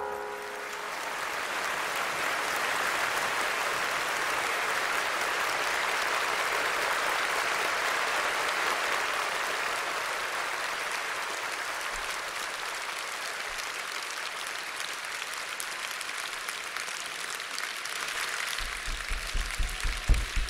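Large concert audience applauding after a song ends, the clapping swelling and then slowly easing off. A few low thuds come in under it near the end.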